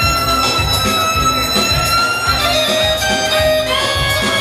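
Live band dance music: a keyboard plays a lead melody in long held, slightly sliding notes over a steady drum beat.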